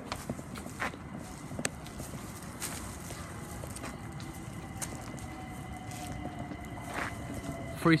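London Overground Class 378 electric train approaching the platform: a faint whine that grows and edges up in pitch in the second half, over steady background noise, with a few scattered clicks.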